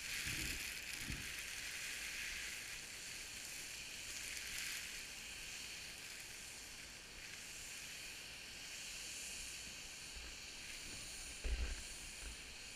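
Skis sliding and carving on snow, a steady hiss that swells and eases with the turns. Short low thumps come in at the start, with the loudest one just before the end.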